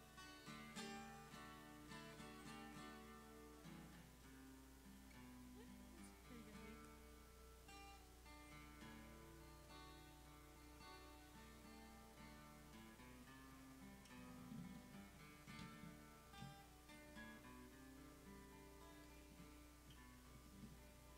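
Acoustic guitar playing chords in a slow, quiet instrumental passage, strummed and picked, over a steady low hum.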